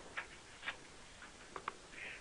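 Four faint, short clicks over quiet room tone: two spaced out early on and two close together near the end.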